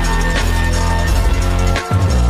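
Sped-up electronic music remix with heavy bass and a driving beat; the bass cuts out briefly near the end.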